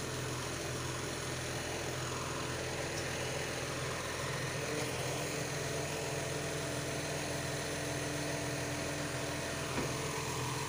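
Garbage truck engine idling with a steady, unbroken drone.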